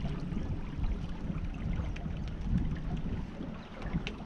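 Wind rumbling on the microphone of a small sailboat under way, over a steady wash of water along the hull with a few faint ticks.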